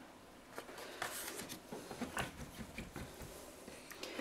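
Faint handling noises of the painting paper and table: a few soft taps and light rustles, with small clicks about two seconds in.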